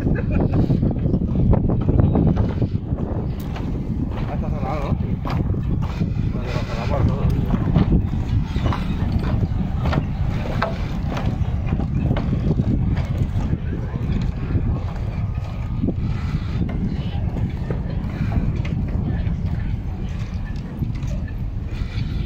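Wind buffeting the phone's microphone in a steady low rumble, with people's voices talking in the background and scattered light clicks.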